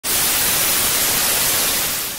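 Television static sound effect: a steady hiss of white noise that starts suddenly and tapers off slightly near the end.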